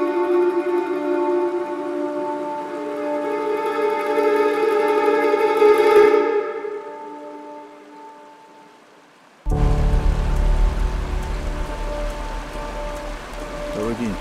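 Background music of long held tones fades away over the first two thirds. About nine and a half seconds in, the rushing of a mountain stream over rocks cuts in abruptly and runs loud and steady.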